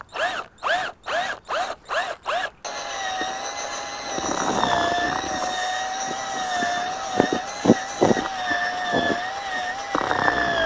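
Electric drill turning a paddle mixer through dry fishing groundbait in a plastic bucket. For the first two and a half seconds it runs in short pulses, its whine rising and falling about three times a second; then it runs at a steady, slightly wavering whine, with a few sharp knocks near the end.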